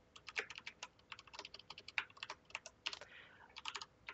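Computer keyboard typing: short runs of quick keystrokes with brief pauses between the runs.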